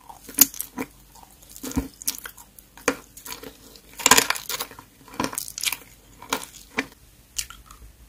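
Close-miked chewing and biting of green sweets, including a jelly candy coated in small sugar balls: a run of irregular crisp crunches and bites, loudest about halfway through.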